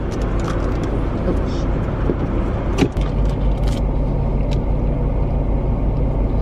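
Car engine running, heard from inside the cabin as a steady low rumble. A sharp click comes a little before halfway, followed by a steady low hum.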